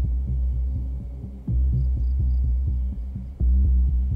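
Suspenseful electronic background score: a deep throbbing bass pulse swells about every two seconds under quick, light ticking.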